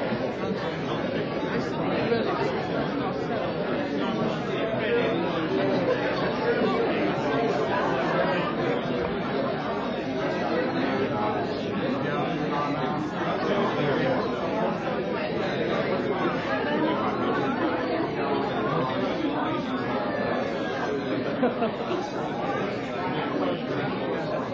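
Crowd chatter: many people talking at once in a steady, overlapping babble of conversation, with no single voice standing out.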